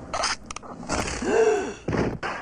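A short breathy sound and a few clicks, then a pitched rising-and-falling vocal sound. Near the end comes a sudden loud burst as a tall house of playing cards collapses.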